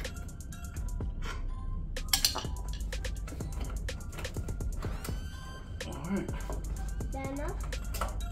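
Background music with a steady beat and a voice in it.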